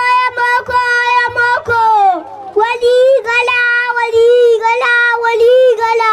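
A young child singing solo into a microphone, holding long, steady notes in phrases, with a short break about two seconds in.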